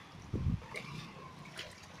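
A block of sodium metal plops into floodwater about half a second in, with a single short, low thud that falls in pitch. After it there is faint, steady background noise from the water.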